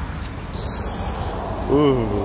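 Steady low rumble of vehicle engines and road traffic with a hiss of noise; a person's voice starts briefly near the end.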